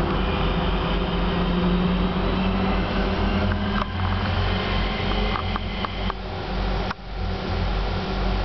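Class 323 electric multiple unit running at speed, heard from inside the passenger saloon: a steady hum over wheel-on-rail rolling noise. A few short clicks come in the second half, with a sharper knock about seven seconds in.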